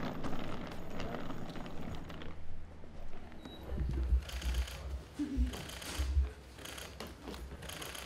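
Footsteps and a wheeled suitcase rolling over a hard floor. From about four seconds in the wheels and steps give short clattering knocks with dull thuds, every half second or so.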